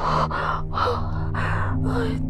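A woman sobbing in a quick run of gasping breaths, about two a second, over a low steady drone.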